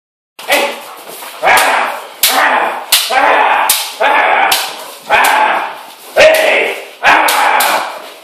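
Bite work with a German Shepherd in a small tiled room: about nine loud, sharp smacks, roughly one a second, each trailed by a short vocal sound that echoes off the hard walls and floor.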